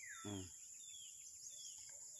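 A bird repeating a short, falling chirp about twice a second, over a steady high-pitched insect drone.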